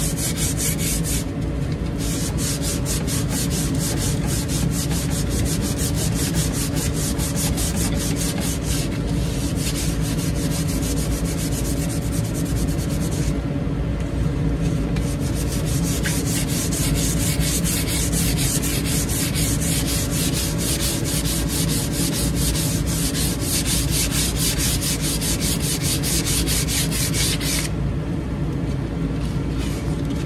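Sandpaper rubbed by hand in quick back-and-forth strokes along a wooden shovel handle, stripping off the old varnish. There are brief pauses a few times.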